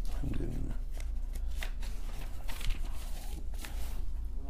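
Book pages being leafed through and paper rustling while the place in the text is looked for, in several short crisp rustles, with a brief low murmur of a voice near the start and a steady low hum underneath.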